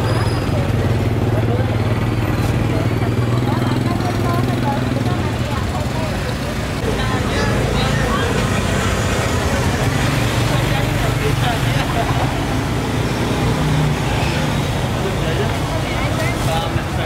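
Busy street-market ambience: people talking over motorbike engines, with a steady engine hum in the first few seconds.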